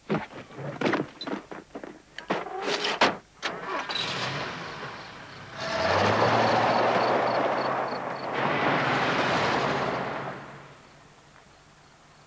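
A run of knocks and scuffs, then a station wagon pulling away hard on a gravel road: engine running under a loud spray of crunching gravel from the tyres, from about six seconds in until it fades out near eleven seconds.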